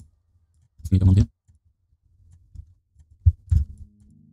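A short murmur from the narrator about a second in, then a couple of sharp computer mouse clicks a fraction of a second apart near the end.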